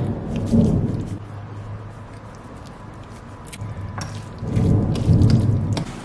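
Thunder rumbling twice: a first deep roll at the start, then a louder one building about four seconds in. Light scattered ticks sound over it.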